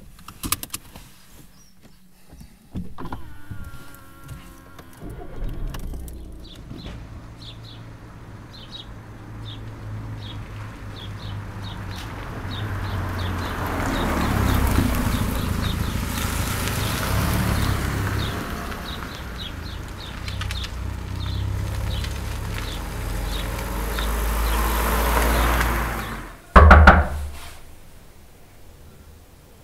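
A car engine running, its rumble swelling in level toward the middle and again near the end, with a light, regular ticking about twice a second through much of it. A single loud thump comes near the end.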